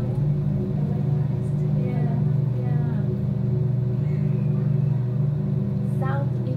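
Aquarium air pump humming steadily at a low, even pitch, with faint voices in the background.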